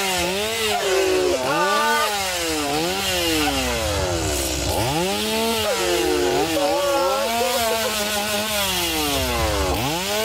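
Chainsaw engine revved up and down over and over, its pitch rising and falling about once a second. The revs drop right down and climb again about halfway through and once more near the end.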